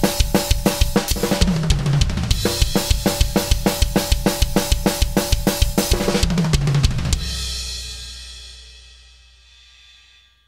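Drum kit playing a fast metal skank beat, with 16th-note fills running down the toms about one and a half seconds in and again about six seconds in. At about seven seconds it stops on a cymbal crash that rings and slowly fades.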